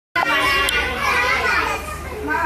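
Many young children chattering and calling out at once, a busy babble of overlapping small voices.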